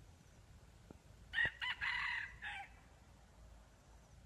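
A red junglefowl cock crowing once: a short, broken crow of about a second and a half, starting about a second in.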